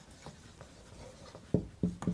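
Dry-erase marker writing on a whiteboard: faint rubbing strokes, then a few short, sharp strokes in the second half.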